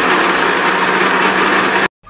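Kenwood countertop blender running at full speed on a watery rice mix: a loud, steady whirr over a constant motor hum, cutting off suddenly near the end.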